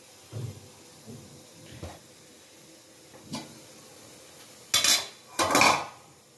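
Metal idli plates knocking and clattering as they are handled and fitted onto the idli stand's central rod: a few light knocks, then two louder metallic clatters near the end.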